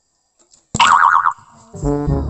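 A cartoon boing sound effect with a quickly wobbling pitch, lasting about half a second, after a brief gap of near silence. Brass background music starts again near the end.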